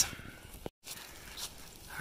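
Faint background hiss with a single short click, followed by a split-second dropout to dead silence where two clips are joined.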